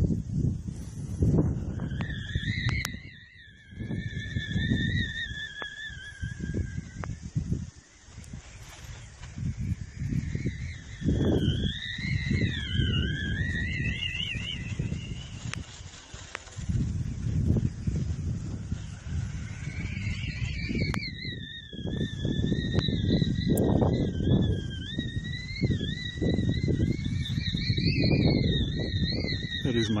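Wind gusting against the microphone in uneven rumbling blasts. A high, wavering whistle-like tone comes and goes over it, about two seconds in, again around eleven seconds, and steadily through the last third.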